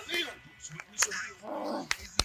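Men's voices on a football practice field: a short spoken line, then a longer rough vocal sound near the end. Two sharp slaps of hands about a second apart as players trade handshakes.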